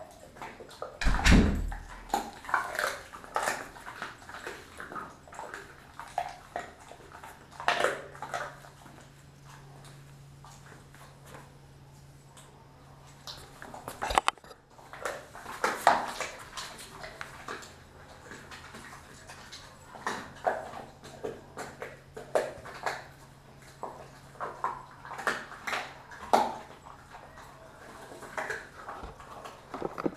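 Kelpie-mix dog chewing raw beef tail and chicken from its bowl, crunching through bone in irregular sharp cracks and crackles, with a heavy knock about a second in.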